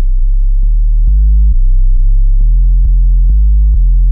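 Deep synth sub-bass playing low sustained notes that step in pitch every half second to a second, with a short click at each note change. It runs through FL Studio's Fruity Blood Overdrive as the plugin's preamp is raised.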